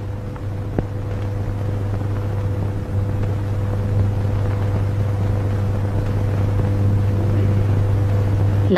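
A low, sustained drone in the film's background score, swelling slowly louder, with a faint steady higher hum above it.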